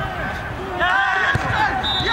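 Footballers shouting and calling to each other during play, voices overlapping, with a single thud of the ball being kicked about one and a half seconds in.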